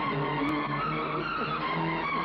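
Tense horror-film orchestral score: several held string notes over a low sustained tone, with a few sliding pitches midway.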